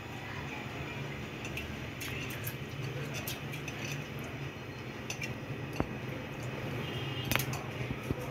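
Soaked lentils being tipped by hand into a pressure cooker of water, with scattered light clinks and taps of the bowl against the cooker's metal rim, two sharper ones near the end, over a steady low hum.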